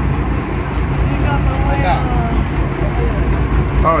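Fishing boat's engine running with a steady low drone while the boat is under way, with faint voices over it.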